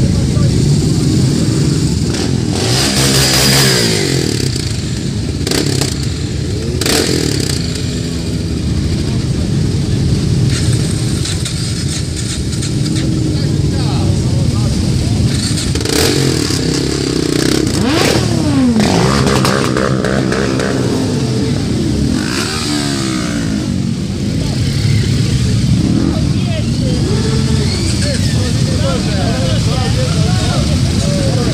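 A line of cruiser motorcycles idling and pulling away one after another, their engines rumbling together. Several bikes rev up and pass close by, each with a rising then falling pitch.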